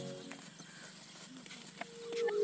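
Footsteps of several people running on grass: soft, uneven footfalls over faint outdoor noise.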